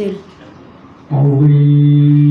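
A steady electronic buzzer tone starts about a second in and holds at one unchanging low pitch.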